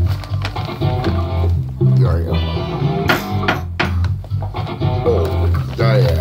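A bass guitar plays a line of low notes that change pitch every half second or so, with a man's voice making sounds and sharp percussive clicks over it.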